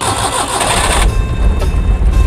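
Small carburetted car petrol engine being started: about a second of starter cranking, then the engine catches and runs with a low rumble.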